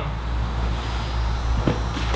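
Steady low background rumble with a faint tap about one and a half seconds in.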